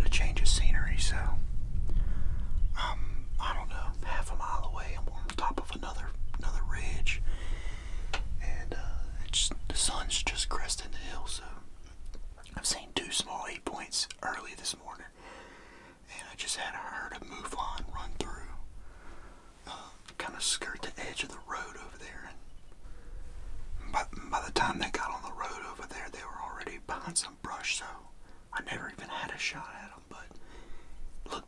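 A man whispering in short phrases with brief pauses, the way a hunter talks quietly in a blind. A low rumble sits under the first dozen seconds.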